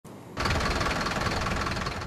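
A Mercedes-Benz Atego tow truck's diesel engine running steadily at idle, starting abruptly a moment in.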